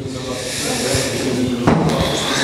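Background hubbub of a crowded hall: a steady hiss of noise with faint voices under it. About 1.7 s in, a sudden louder burst of noise breaks in.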